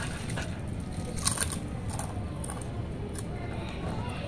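Lay's potato chips crunching as they are bitten and chewed: a scatter of short, crisp cracks.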